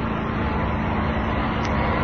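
Steady background noise with a low hum underneath, and one faint click about one and a half seconds in.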